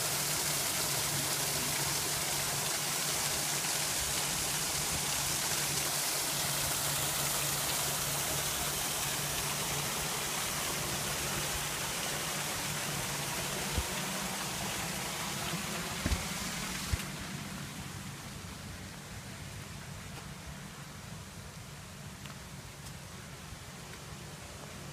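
Small garden waterfall splashing into an ornamental pond, a steady rush of falling water that grows fainter over the last several seconds. A few light knocks a little past halfway.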